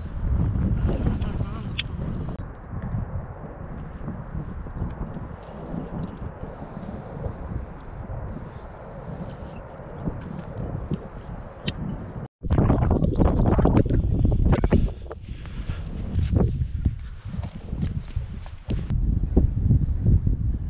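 Wind buffeting the camera's microphone in a steady low rumble with gusts. About twelve seconds in the sound cuts out for an instant and comes back louder and gustier.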